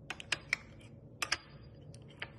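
Metal knife clicking against the rim and sides of a small cup while scooping out jelly: a quick run of four sharp clicks, two more about a second in, and one near the end.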